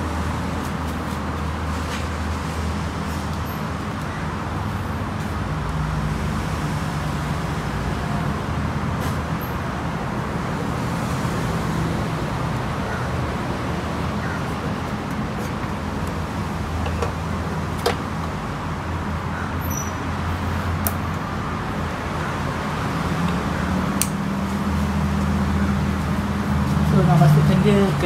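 A steady low background rumble, with a few short sharp clicks of a plastic motorcycle fuel pump assembly being handled and pushed into the fuel tank opening.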